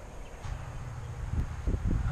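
Low rumble of wind buffeting the microphone, coming in about half a second in, with a few faint handling knocks near the end.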